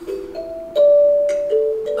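Kalimba (thumb piano) being plucked: four single notes in slow succession, each ringing on, the third the loudest.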